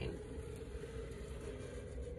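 Metallic marker drawn steadily along the edge of kraft paper, giving a continuous scratchy hiss of the tip on the paper.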